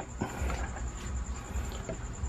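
Faint clicks of a 3.5 mm jack plug being handled and pushed into a V8 sound card's socket, once shortly after the start and once near the end, over a steady low hum.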